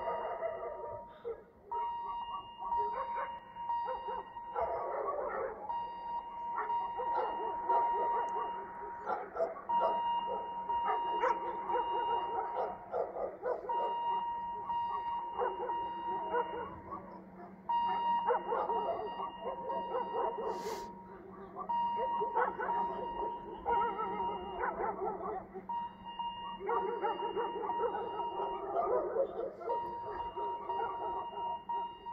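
Dogs barking and yelping at a polar bear, with a steady high electronic tone that breaks off and starts again about every four seconds.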